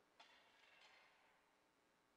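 Near silence: room tone, with one faint, brief, high noise starting sharply about a fifth of a second in and fading within a second.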